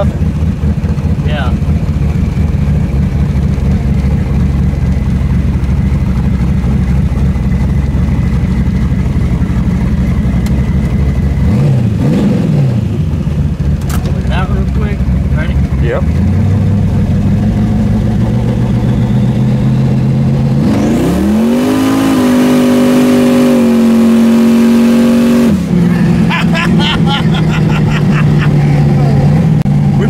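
Twin-turbo Chevy S10 pickup engine heard from inside the cab, running steadily at cruise, then revving up under hard acceleration about 21 seconds in, the pitch climbing and holding high for a few seconds before it lets off and settles back to a steady note. The engine is freshly tuned and pulls cleanly.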